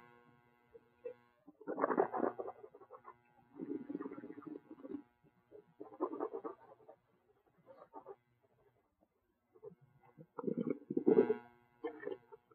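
Mouthful of red wine being swished and worked around the mouth in several short bursts, some with a low hum of the voice in them, then spat into a stainless steel spit cup near the end.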